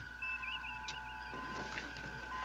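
Starship bridge background sound effects from the USS Enterprise: a steady electronic hum of two high tones with a warbling computer tone in the first second, opened by a sharp click as the intercom switch on the captain's chair arm is pressed.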